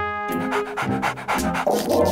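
Cartoon background music in short, changing notes, with a cartoon dog's vocal sounds over it.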